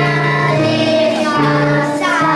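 A group of young children singing together in unison, carried by a steady instrumental accompaniment with held bass notes.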